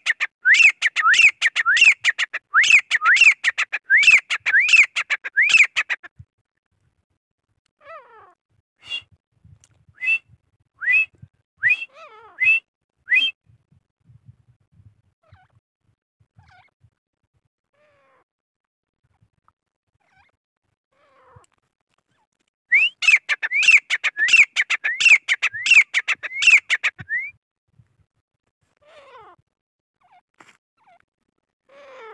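Grey francolin (teetar) giving its loud territorial call: a fast series of rising-and-falling notes, two or three a second, for about six seconds. A few soft, short notes follow, then a second loud bout of the same call starts about 23 seconds in and lasts about four seconds.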